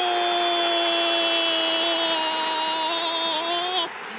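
A man's voice holding one long, high shouted note for nearly four seconds, rising slightly at the end, over loud stadium crowd noise. It is an Arabic football commentator screaming as a penalty is saved.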